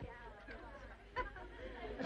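Faint background chatter of several voices mixed together, with no clear words.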